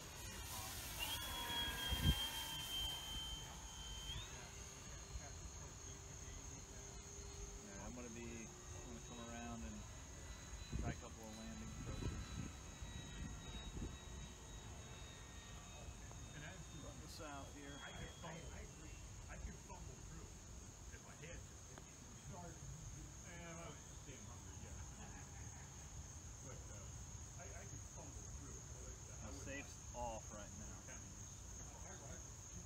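Steady high chorus of crickets, with wind rumbling on the microphone. Over it runs the thin high whine of the E-flite Draco RC plane's electric motor and propeller in flight; it steps up in pitch about four seconds in and drops back near seventeen seconds as the throttle changes.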